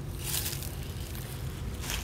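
Rustling and handling noise from a beekeeper's suit and gloves as she bends over and takes hold of a hive box, in two brief bursts, about a fifth of a second in and near the end, over a low steady rumble.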